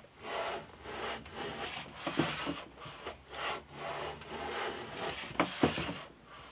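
Metal hand plane shaving a clamped hardwood blank: a series of short planing strokes, roughly one a second, each a brief scraping hiss of the iron cutting a shaving.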